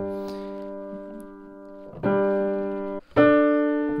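1904 Bechstein Model A grand piano notes struck and left to ring during temperament tuning of narrowed fifths. A note fades away over the first two seconds, another is struck about two seconds in, and a louder one just after three seconds.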